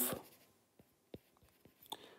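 Stylus writing on a tablet screen: a few faint taps and strokes as a handwritten label is written, the clearest tick about a second in.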